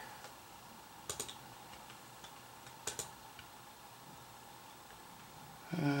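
Computer mouse clicking: a quick double click about a second in, another about three seconds in, and a few fainter clicks, over faint room noise.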